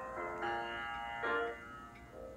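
Grand piano playing slow sustained chords, heard over a video call. A new chord is struck about a second in, then rings and fades.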